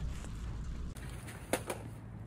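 Low steady outdoor rumble, then two sharp knocks about a second apart near the end as bags of camping gear are handled beside a loaded motorcycle.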